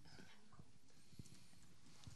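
Near silence: room tone with a few faint, soft knocks.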